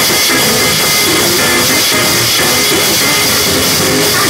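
Live gospel praise-break music, loud and steady: a drum kit played fast and hard right at the microphone, with cymbals ringing throughout, over sustained keyboard chords and bass.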